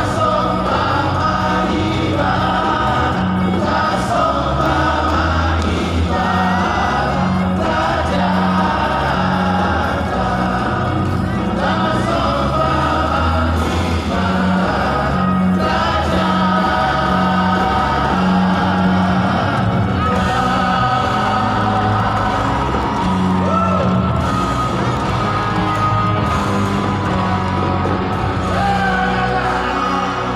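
Live gospel-style Christian music: a band with several voices singing together, heard from the stadium stands through the loudspeaker system.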